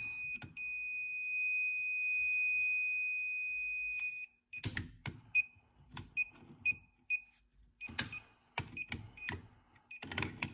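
Circuit breaker finder's handheld receiver beeping as it is passed over the breakers in a panel: a steady high beep for about four seconds that marks the breaker feeding the traced outlet, then short, broken beeps. A few sharp clicks fall among the later beeps.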